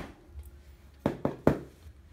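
Three sharp knocks in quick succession, about a quarter second apart, a little past a second in, after a quiet moment.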